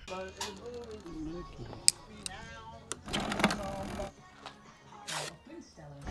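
Faint talk and laughter over soft background music, with a sharp click about two seconds in and another near the end.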